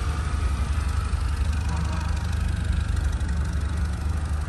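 A car engine idling: a steady low rumble.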